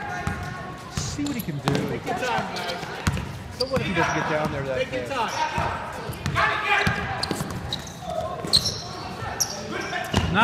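A basketball being dribbled on a hardwood gym floor, its bounces mixed with the voices of players and spectators talking and calling out in an echoing gym.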